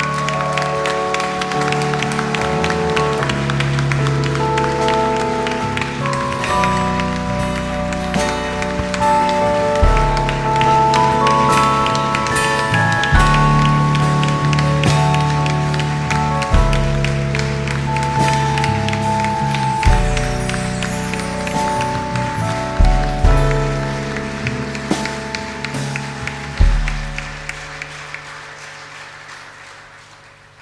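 Live band playing an instrumental passage of held chords with drum and bass hits every few seconds, while the audience and performers clap along. The music fades out near the end.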